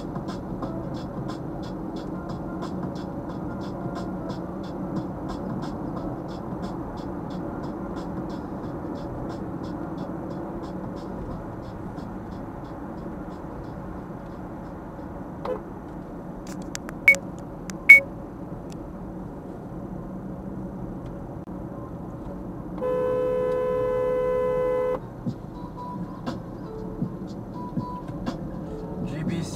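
Steady road and tyre noise inside a moving car's cabin, with a faint regular ticking through the first part. Two sharp clicks come a little past the middle. Later a car horn sounds once, held steadily for about two seconds.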